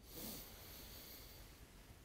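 A man taking one long, faint deep breath during a breathing exercise after running in place.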